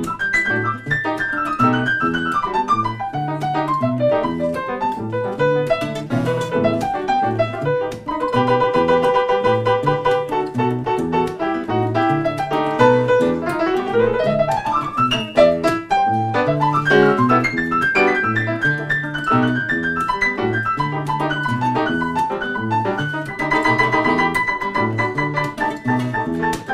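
Grand piano playing a Latin jazz piece with a nylon-string guitar, the piano most prominent, including a quick rising run about fourteen seconds in.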